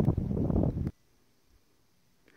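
Wind buffeting the microphone, a low rumble for about a second, then the sound cuts off abruptly to silence at an edit.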